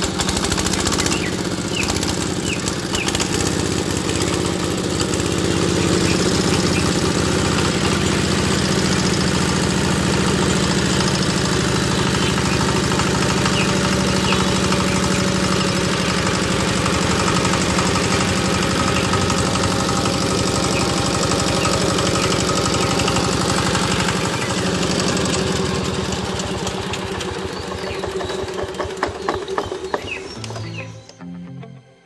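EM190 10 hp single-cylinder diesel engine running steadily, a fast even chugging of firing strokes; it gets a little quieter in the last few seconds.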